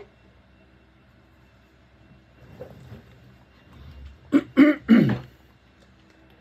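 A man clearing his throat: three short, harsh bursts in quick succession about four seconds in.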